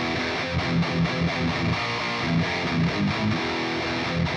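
Distorted electric guitar played through a Line 6 POD Express amp-modeler pedal, riffing without a break, with low notes that repeat every third of a second or so.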